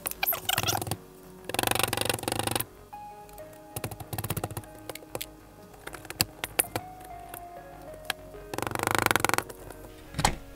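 A wet, chalky toy dig block being scraped and picked apart by hand, with two louder bursts of gritty scraping and crumbling about a second and a half in and near the end, and scattered scratches and ticks between. Soft background music with held notes runs underneath.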